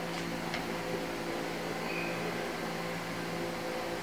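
Steady room hum and hiss, like a fan or appliance running, with two faint light knocks near the start as a phone stand is set down on a wooden desk.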